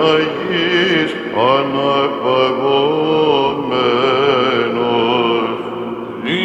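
Byzantine Orthodox chant, sung by voices in a slow, winding melody over a steady low held note (the ison drone).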